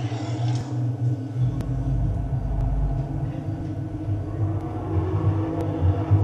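A low, steady rumbling drone from a film soundtrack played over cinema speakers and picked up by a camcorder in the audience, swelling deeper for a second or two early in the stretch.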